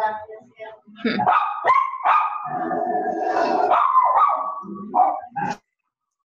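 A dog yelping and whining in a long, pitch-bending call that cuts off suddenly near the end.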